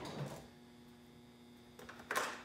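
Faint steady electrical hum in a quiet kitchen, with a few light clicks of utensils being handled in an open drawer near the end.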